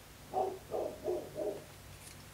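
A woman's voice making four short wordless sounds, hummed notes rather than words, each a fraction of a second long.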